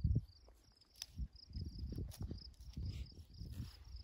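Wind buffeting the microphone in irregular gusts, with a cricket-like insect in the grass chirping in a steady train of even, high-pitched pulses.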